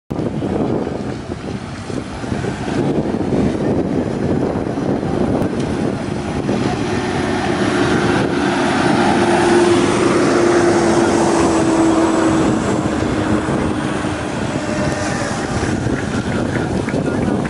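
Large coach bus driving past at low speed, its engine note steady then sliding slightly lower as it goes by, over a constant rumble.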